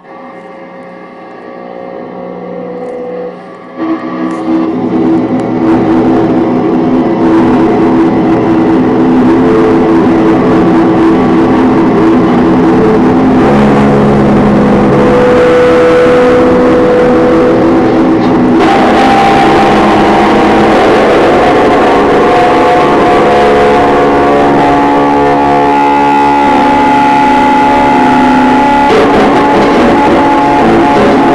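Noise-music duo playing amplified, layered drones. It builds from a low hum over the first few seconds into a loud, dense wall of steady tones, and the tones shift about two-thirds of the way through.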